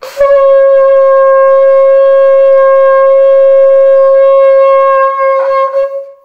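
Shofar, a ram's-horn trumpet, blown in one long, loud, steady note that wavers and breaks up briefly near the end before fading out.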